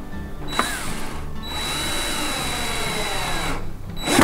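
Cordless drill driving a screw into wood: a short spin about half a second in, then a run of about two seconds whose motor pitch rises and falls as the screw goes in, and another short burst at the end.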